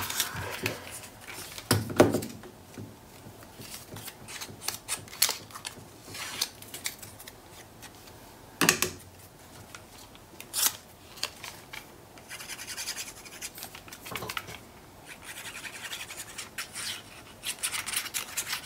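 Paper pieces and a plastic liquid-glue bottle handled on a cutting mat: scattered light taps, clicks and paper rustling, with a stretch of fine scratching about two-thirds of the way through.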